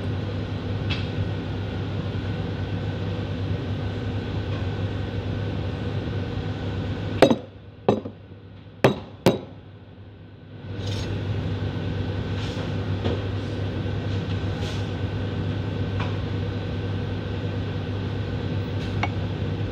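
Steady background hum, broken a little before halfway by four sharp knocks and clinks of hard objects on the counter, all within about two seconds. The hum drops away for a few seconds after the knocks, then returns.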